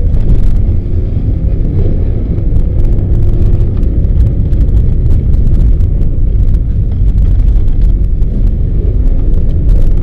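Subaru Forester 2.0XT's turbocharged flat-four engine and its tyres on a packed-snow road, heard from inside the cabin: a steady loud low rumble with scattered sharp clicks throughout.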